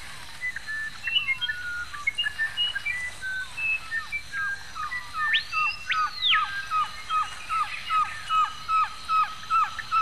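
Several rainforest birds chirping and whistling in short varied notes. From about halfway, one bird repeats a downslurred note about twice a second. Around the middle comes one loud whistle that sweeps up, holds high and drops back down.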